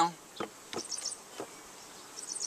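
Honey bees humming from a freshly opened hive, with a few light clicks.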